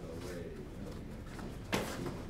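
One sharp clack of sparring sticks striking, near the end.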